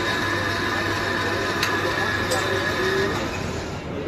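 Electric sev extruder machine running steadily with a constant motor hum, pressing dough strands into a kadhai of hot frying oil, which sizzles. There is a sharp click about a second and a half in, and faint voices underneath.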